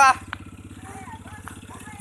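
Small motorcycle engine of a homemade four-wheel buggy running at low speed as the buggy rolls along, with a fast, even putter.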